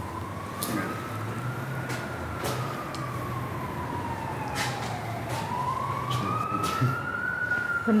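A siren wailing, its pitch slowly rising and falling twice, with a few sharp clicks scattered through it.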